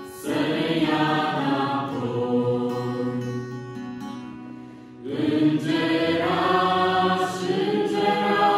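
Mixed youth choir singing a religious song to acoustic guitar accompaniment. A phrase dies away between about three and five seconds in, and the next phrase enters strongly about five seconds in.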